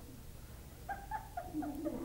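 Faint laughter: a few short, high-pitched pulses starting about a second in, followed near the end by a lower laugh.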